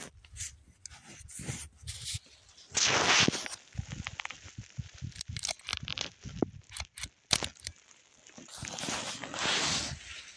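Close handling noise: rustling, rubbing and scuffing with scattered sharp clicks and knocks, like footsteps on rough ground and a hand moving against the recording device. There is a louder rough scraping burst about three seconds in, a single sharp knock about seven seconds in, and more rubbing noise near the end.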